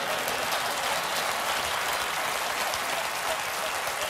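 Audience laughing and applauding after a joke: a steady, even wash of clapping and laughter.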